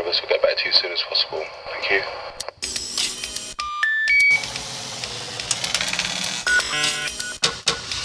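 Electronic music intro: a voice for the first couple of seconds, then a collage of computer-like beeps and bleeps, with three short tones stepping up in pitch about four seconds in, over a noisy, clicking electronic texture.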